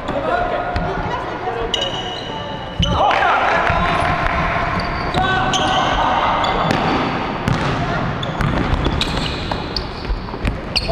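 Basketball game in a large gym with a hardwood floor: the ball bounces, sneakers squeak briefly, and players shout and call to each other. The sound echoes in the big hall, and a louder call rises about three seconds in.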